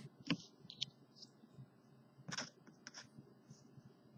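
Small plastic clicks and taps as fingers handle a LEGO minifigure and a small printed tile piece, with a sharp click about a third of a second in and a few more a little over two seconds in.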